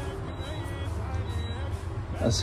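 Faint, reverberant chanting of many voices over a steady low rumble.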